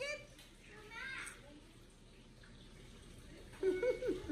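A young child's voice in a few short utterances: one at the start, one about a second in, and one near the end. Between them is only a faint steady hiss.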